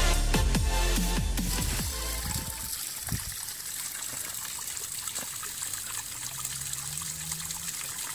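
Electronic music with deep, falling bass hits fades out over the first couple of seconds, giving way to a small waterfall trickling steadily over rock ledges into a shallow pool.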